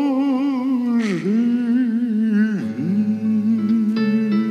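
A man singing long held notes with a wide vibrato into a microphone, with a short break about a second in and another near the end. Soft instrumental accompaniment plays under the voice, and plucked guitar-like notes come in near the end.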